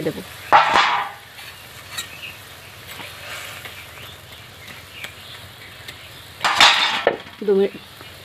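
Fried fish and vegetable pieces tipped into hot simmering gravy in a kadai, with a loud sizzle about half a second in. The gravy then simmers quietly while a steel spatula stirs, and a second loud sizzling burst comes near the end.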